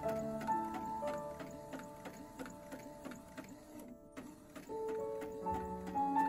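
Soft background music with a gentle melody, which thins out, drops away briefly about four seconds in and comes back near the end. Under it an Epson inkjet printer runs as it prints and feeds out a sheet, with faint, evenly repeated ticks.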